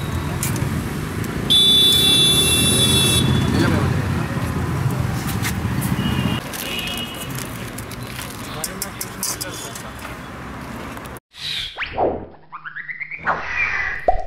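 Busy roadside street-food stall ambience: a steady rumble of traffic and voices, with a loud shrill tone lasting about a second and a half near the start. Near the end the ambience cuts off and a short logo sting of quick sliding, swooshing sound effects plays.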